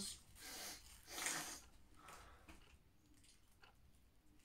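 A person sniffing twice in quick succession, in a small room.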